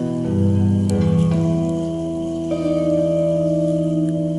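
Live jazz trio of electric guitar, bass and drums playing slow, long held notes that ring on, with a low bass note coming in near the start and a change of note about two and a half seconds in.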